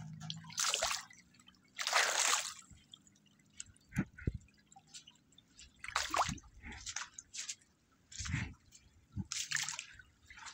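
Footsteps wading through shallow floodwater: a splash or slosh with each step, roughly every one to two seconds, with a few duller thuds between.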